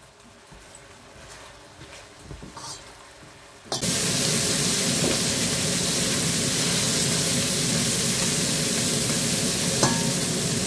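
Pork cubes sizzling hard in olive oil in a stainless-steel pot over high heat, stirred with a silicone spatula, as the juice the meat releases boils off and the meat starts to brown. The first few seconds are quiet. Then the loud, steady sizzle starts suddenly about four seconds in.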